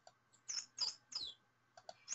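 Faint recorded bottlenose dolphin signature whistles: three short, high chirps in quick succession, the last gliding down in pitch.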